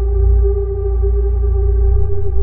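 Ambient electronic music: a held synthesizer pad drone over a deep, heavy bass, steady with no beat.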